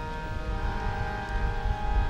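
Harmonium holding steady sustained notes in a pause between sung lines of Sikh kirtan.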